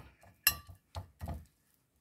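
Silicone pastry brush dabbing and scraping hard butter around a ceramic baking dish, with a few short clicks and knocks. The sharpest knock comes about half a second in.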